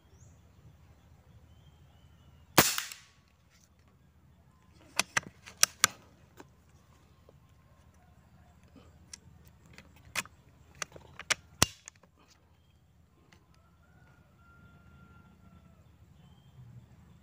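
A PCP air rifle fires one sharp shot about two and a half seconds in. It is followed by two clusters of fainter sharp mechanical clicks and knocks, a few seconds apart.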